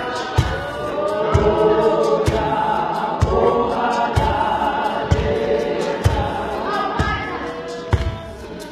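Women's choir singing together, with a low thump about once a second keeping the beat.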